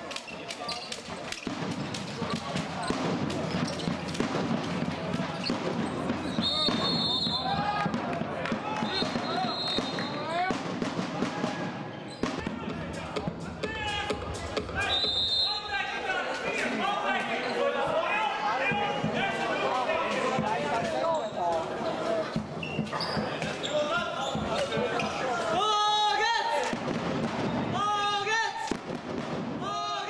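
Sounds of an indoor handball game: the ball bouncing on the hall floor and players and spectators shouting and talking, echoing in the hall. Short, high, steady whistle blasts come a few times, about 6, 9 and 15 seconds in.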